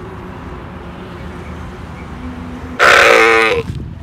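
A camel calling once, a loud call lasting under a second about three-quarters of the way through, over faint background noise.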